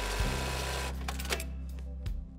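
Industrial sewing machine running, stitching through denim, with a steady low hum underneath; the stitching noise thins out about three-quarters of the way through.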